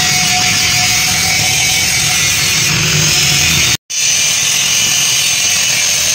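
Handheld angle grinder with an abrasive disc grinding the metal flange face of a tractor housing, running at a loud, steady pitch. The sound breaks off for an instant a little under four seconds in, then carries on.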